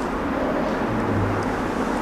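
Steady rushing background noise, even from low to high pitches, with a faint low hum in the middle stretch.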